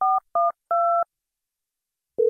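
Touch-tone telephone keypad dialing: three short dual-tone beeps in quick succession, the third held a little longer. They end about a second in, finishing a dialed number before the call connects.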